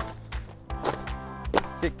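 Cardboard box stamped flat underfoot: a sharp crunch at the start, then a couple of softer cardboard crackles, over steady background music.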